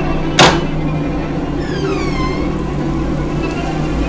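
A low, steady suspense drone with one sharp, loud noisy hit about half a second in, then a descending creak of a door swinging open around two seconds in.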